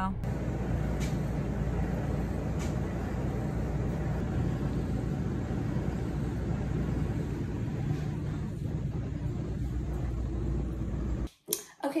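Steady low background rumble with no distinct events, cutting off abruptly about eleven seconds in. A voice begins right at the end.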